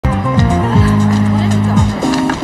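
A van's engine and a brief tyre skid as it pulls up, over background music. A low drone rises, holds steady, and drops away near the end.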